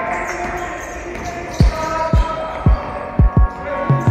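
A basketball bouncing five times on a hard floor, starting about a second and a half in at roughly half-second intervals, with the last two bounces close together. Faint steady held tones run underneath.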